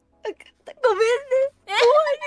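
A young woman's high-pitched voice in drawn-out, whiny speech, with held and bending vowels and short pauses between them.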